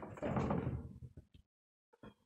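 Heavy half of a split oak log being shoved along the sawmill's metal bed, a scraping, rumbling slide that dies away about a second and a half in, followed by a few faint knocks.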